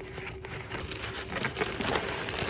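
Scissors cutting a plastic poly mailer bag, and the plastic crinkling and rustling as it is handled. The crinkling grows louder towards the end as the bubble-wrapped package is pulled out.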